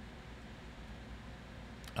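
Faint steady room tone: a low hum and hiss, with a small click just before the end.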